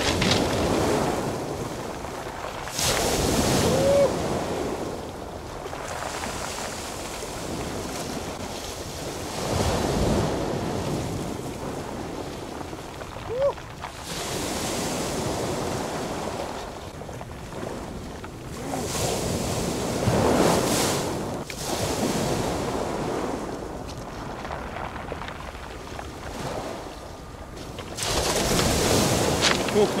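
Small sea waves breaking and washing onto a pebble beach, the surf rising and falling in swells every several seconds.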